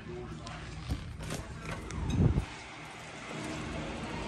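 A door being opened and passed through: a few sharp latch clicks, a short creak, and a heavier low thump about two seconds in.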